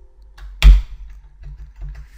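A computer keyboard key struck hard about two-thirds of a second in, a sharp loud click, followed by a few faint key clicks over a low steady hum.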